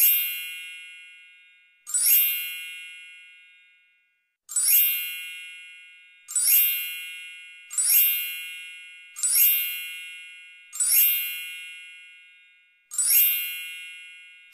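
A bright, high bell-like ding sound effect, struck about eight times at uneven intervals of one and a half to two and a half seconds. Each ding rings out and fades before the next. The dings go with ingredient labels popping up on screen.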